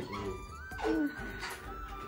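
Quiet background music, a thin high melody line that steps up and slowly falls.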